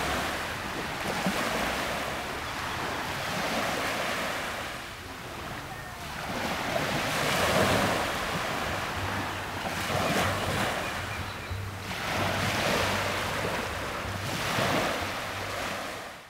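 Ocean surf washing in and out, swelling and fading every two to three seconds.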